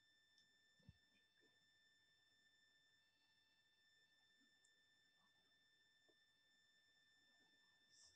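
Near silence: room tone with faint steady high-pitched tones and a tiny click about a second in.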